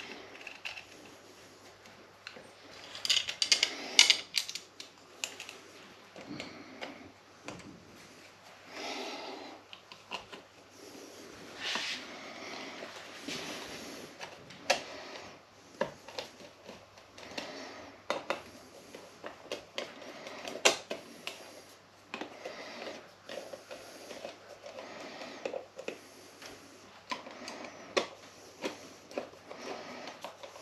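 Hand screwdriver driving the fixing screws of a plastic light switch plate into its back box: irregular small clicks, ticks and scrapes of the screwdriver tip and the plastic, with a louder run of clicks about three to four seconds in.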